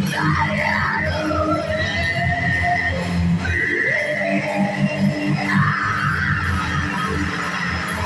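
Live electric guitar played loud through an amp, with a steady low chord bed and a high wailing line that slides up and down, holds one long note in the middle, then slides again.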